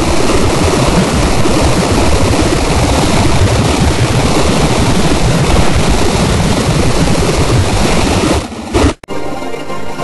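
Loud, dense noise with no clear tone, which cuts off suddenly about nine seconds in. Music with held tones follows.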